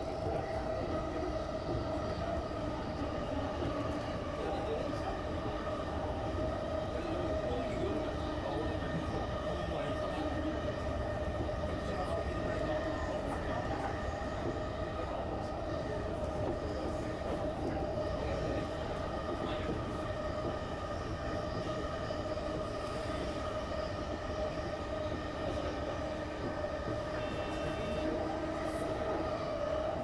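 JR Chuo Line electric commuter train running at a steady speed, heard from inside the cab. An even rumble carries a steady hum that holds one pitch throughout.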